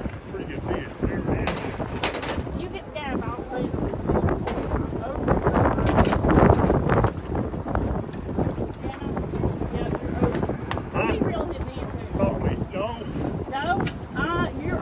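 Wind buffeting the microphone over moving river water aboard a small open fishing boat, loudest in the middle. Muffled voices come through near the start and near the end, with a few light knocks about two seconds in.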